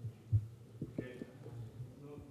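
Dull thumps and knocks of a table microphone being bumped or handled, the loudest about a third of a second in and a few lighter ones around a second, over a steady low electrical hum.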